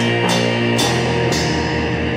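Lo-fi shoegaze rock music: sustained guitar chords over a drum kit. The cymbal hits stop about halfway through, leaving a low pulse that repeats about five times a second.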